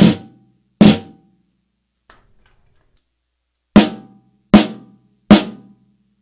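Acoustic snare drum struck with a stick in single strokes, each ringing briefly: two strokes about 0.8 s apart at the start, then after a pause of nearly three seconds three more at the same spacing. The strokes are played to compare snare stroke technique: letting the stick rest on the head versus pulling it back.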